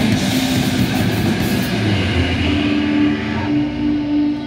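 Hardcore punk band playing live: drums with distorted electric guitar and bass. Less than halfway in the cymbals drop away, and the guitar and bass are left ringing on steady held notes near the end.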